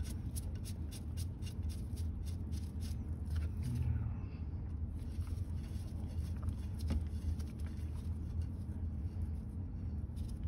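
Light metal clicks and small handling scrapes as a hex key turns the set screw in a steel rifling cutter body, over a steady low hum. The clicks come in a quick run over the first few seconds, with one more about seven seconds in.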